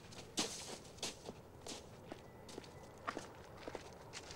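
Footsteps of two men crunching through snow, irregular steps about every half second.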